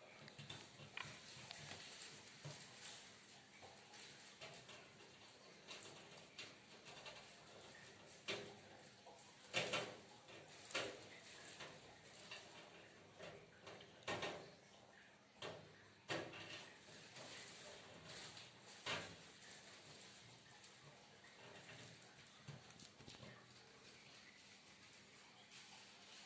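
A hermit crab's legs and shell clicking and scraping against the wire mesh of its enclosure lid as it climbs: faint, with about half a dozen sharp clicks through the middle of the stretch.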